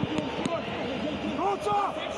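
Several men's voices calling and shouting over one another, over a steady background hiss.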